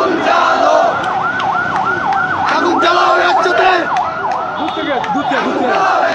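A siren in a fast yelping cycle, rising and falling about three times a second, over a shouting crowd. The yelping stops about five seconds in.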